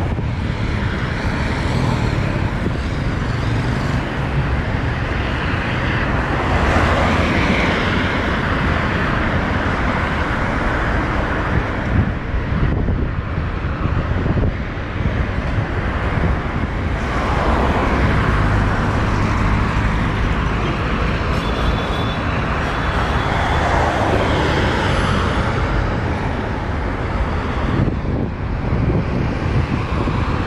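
Road traffic on a wide city avenue: a steady rumble of cars with several vehicles passing, each swelling and fading away.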